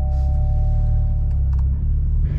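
A car radar detector sounding a steady two-note alert tone that stops about one and a half seconds in; the detector keeps going off. Underneath is the steady low in-cabin rumble of the Porsche 911 Turbo S's twin-turbo flat-six and its tyres on the road.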